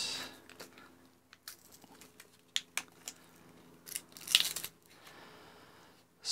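Thin clear plastic blister packaging crinkling and clicking in the hands as a microSD card is worked out of it: scattered sharp clicks, then a louder rustle about four seconds in.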